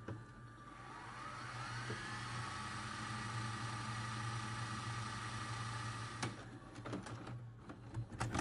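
A small electric motor whirring: it spins up, rising in pitch over about a second, runs steadily, then stops about six seconds in, followed by a couple of clicks.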